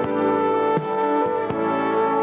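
Trumpets playing a melody in held notes together, with new notes struck about every three-quarters of a second.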